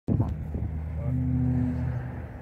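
A motor vehicle engine running with a steady low hum.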